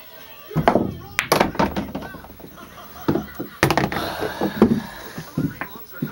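Pool balls clacking: the cue tip hitting the cue ball and balls knocking together, with sharp clacks a little over a second in and again past three and a half seconds, under loud voices.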